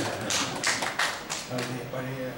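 Several short, sharp taps or knocks in quick succession, about five in the first second and a half, followed by a voice.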